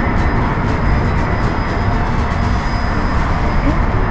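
Car engine idling with a steady low rumble and hiss.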